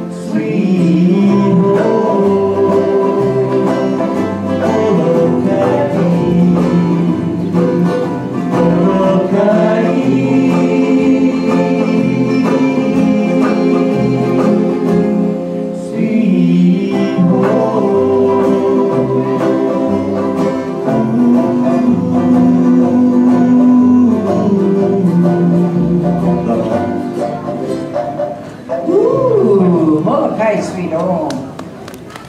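A small band playing live, with ukulele, upright bass and guitar, and a man singing a slow melody with held notes over the strummed strings.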